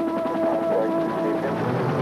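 Music with sustained, held chords; lower notes come in near the end.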